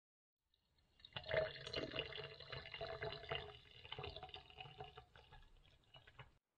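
Water poured from a kettle in a thin stream into a glass jar, splashing steadily as it fills. It starts about a second in.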